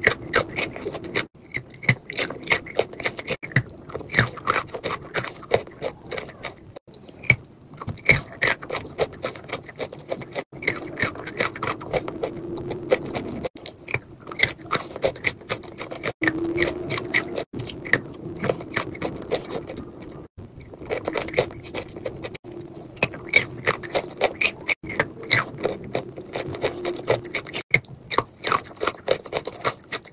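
Close-up wet mouth sounds of eating a thick creamy paste: sticky lip smacks, squelching bites and chewing, with many small wet clicks. The run is broken by abrupt cuts every few seconds.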